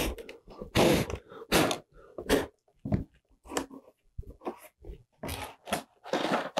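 Sheets of paper rustling and flapping against a cardboard box as they are handled, in irregular short bursts with quiet gaps between.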